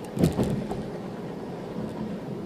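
Steady road and engine noise of a car driving, with a brief loud bump and rattle about a quarter of a second in.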